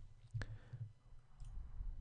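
A single sharp computer mouse click about half a second in, over a low background rumble.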